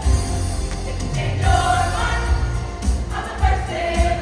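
Large high-school class choir singing together in parts, with a pulsing low bass under the voices.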